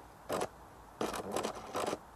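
Faint handling noise: a short scrape about a third of a second in, then a run of rubbing and scraping from about one second in until just before the end.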